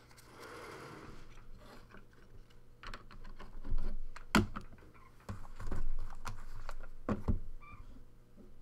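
Trading-card packs and boxes being handled on a tabletop: a brief soft rustle, then scattered clicks and knocks, the sharpest about four seconds in. A pair of thuds near the end as a sealed card box is set down.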